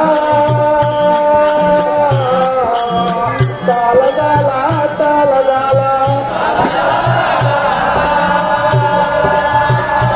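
Folk devotional song: a voice singing long, slightly wavering held notes over a drum beating about two to three times a second, with small hand cymbals clinking on the beat. About six and a half seconds in, the sound grows fuller and less clear.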